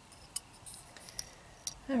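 A few sharp clicks and light rattling from a metal binder clip's wire handles as it is squeezed open and pulled off a thin stick.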